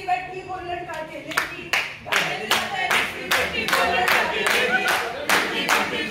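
Hand clapping in a steady rhythm, about two to three claps a second, starting a little over a second in, with a voice carrying on between the claps.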